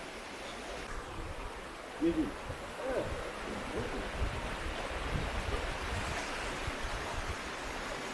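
Steady rushing of a forest stream, with low thumps of footsteps and camera handling on a dirt trail. Two short pitched sounds rise and fall about two and three seconds in.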